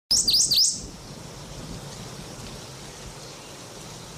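Three quick, loud bird chirps in the first second, each a sharp dip and rise in pitch, followed by a faint steady hiss.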